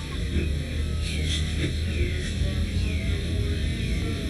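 Background music: a steady low bass drone with short falling high notes repeating about twice a second.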